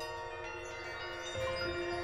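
Piano with live electronics sounding as bell-like chimes: a few notes strike in turn and ring on, layering into a shimmering cluster of sustained tones. The electronics re-create bell timbres from spectral analysis of real bells.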